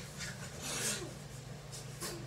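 Rustling and rubbing of clothes and bodies in a play-fight scuffle, with one short rasping burst a little under a second in.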